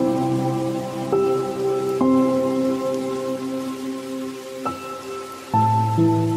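Slow, soft instrumental music of held notes that change every second or two, laid over a steady hiss of falling rain.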